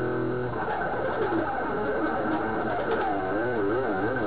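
Electric guitar notes bent up and down in a wide, wavering vibrato, a few wobbles a second, following a held chord.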